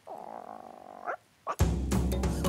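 A raspy cartoon sound effect lasting about a second, ending in a quick rise in pitch, then a brief silence and a click. Loud music starts near the end.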